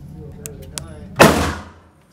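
A single loud gunshot about a second in, with a short echoing decay off the walls of an indoor firing range. A few faint clicks come before it.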